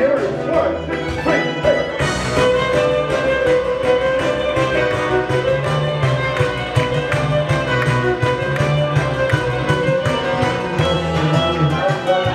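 Electric violin played live, bowing a melody over a backing track with a steady beat and bass line; the backing fills out about two seconds in.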